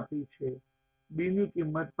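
A man speaking in short explanatory phrases, with a pause of about half a second in the middle.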